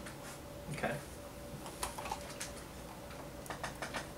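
A few light, sharp clicks and taps from plastic iced-coffee cups being handled, with ice shifting in the cup, several coming in quick succession near the end.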